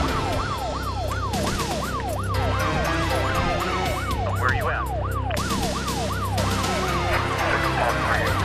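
Police car siren in its rapid yelp mode, its pitch sweeping up and down a bit more than twice a second, over a steady low hum.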